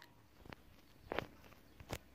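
Quiet room tone broken by three faint, brief clicks spread across the pause.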